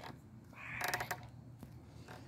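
A crow caws once, a harsh call about half a second in lasting roughly half a second.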